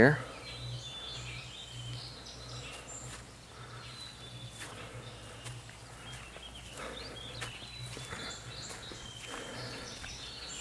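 Outdoor woodland ambience: small birds chirping on and off in short high calls over a steady low hum.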